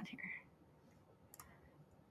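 Near silence after a spoken word, with one faint, brief computer mouse click about a second and a half in as a menu item is chosen.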